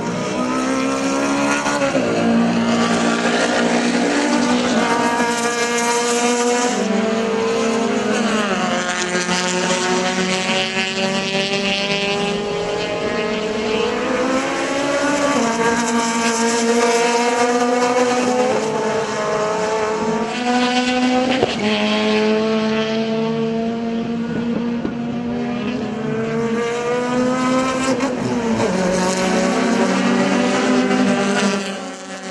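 Racing touring-car engines at high revs, the pitch climbing steadily through each gear and dropping sharply at each upshift, several times over.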